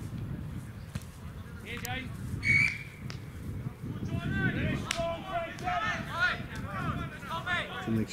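Wind buffeting the microphone on an open sports field, a brief high tone about two and a half seconds in, then men calling out across the pitch from about four seconds on.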